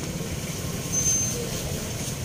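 Low, steady rumble of motor vehicles running in the street, with a brief high tone about a second in.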